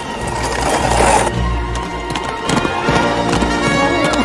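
Film score music, with horse hooves clip-clopping and a horse whinnying.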